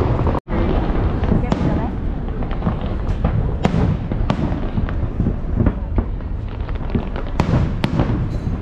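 Aerial fireworks going off: a continuous low rumble of bursts with sharp cracks and bangs every second or so, over people's chatter.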